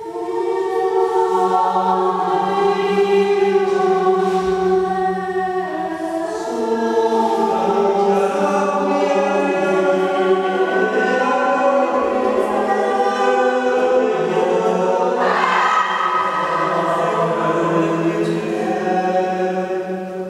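Choir singing long held chords, several voices sustaining notes that shift in pitch every few seconds. The voices swell brighter and louder about fifteen seconds in.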